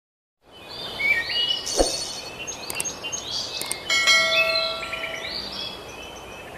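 Birds chirping and twittering over background ambience, with a bell-like chime struck about four seconds in and ringing for over a second. There is a short thump a little under two seconds in.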